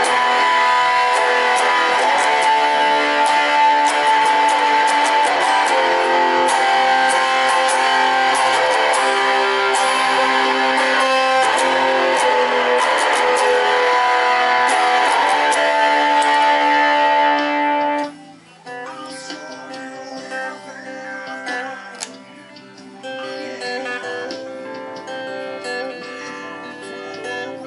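Fender Stratocaster electric guitar playing loud, full strummed chords. About 18 seconds in, the level drops suddenly and it goes on with quieter, sparser picked notes.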